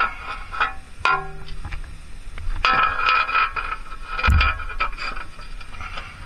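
Metal loading ramp and hitch carrier clanking and ringing as the ramp is worked in under the motorcycle's front wheel: a series of knocks, a stretch of ringing metal in the middle and a heavy thump a little past four seconds in.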